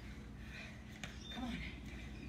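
Mostly speech: a brief spoken "come on" over a steady low hum, with one faint click about a second in.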